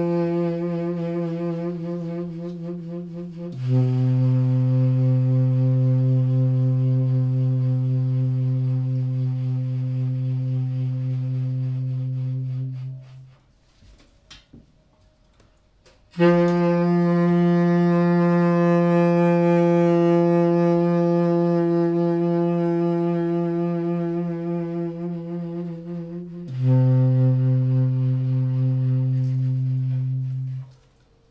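Solo tenor saxophone playing long held low notes. A higher note wavers slightly, then drops to a lower note held about nine seconds, then comes a pause of about three seconds. The same two notes follow again: the higher one for about ten seconds, then the lower one.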